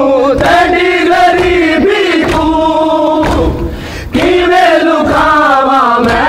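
A crowd of men chanting a Muharram mourning lament (noha) together, with rhythmic chest-beating (matam) about twice a second under the voices. The chanting breaks off briefly a little after three seconds in, then resumes.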